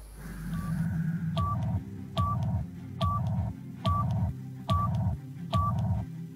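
Electronic countdown jingle: a short high beep with a click, repeating about every 0.8 seconds over a low pulsing bass.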